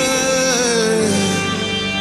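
Live worship music: a man singing a long held note into a microphone that bends and falls away about halfway through, over a steady keyboard and band backing.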